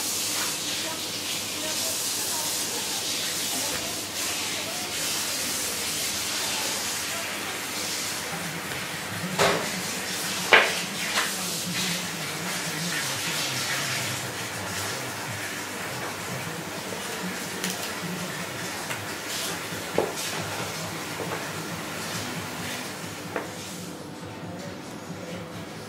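A steady hiss, strongest in the first half and easing off later, with a few sharp clicks and knocks from handling food on a wooden cutting board. The loudest knocks come about ten seconds in.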